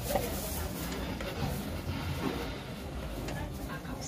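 Faint voices in the background over a steady low rumble of ambient noise.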